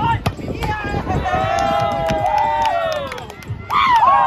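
A sharp slap of a volleyball being spiked near the start, then players' drawn-out shout lasting about two seconds as the rally ends, followed by another short, loud shout near the end.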